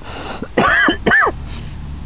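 A man clearing his throat twice, each time rising and then falling in pitch, about half a second and about a second in.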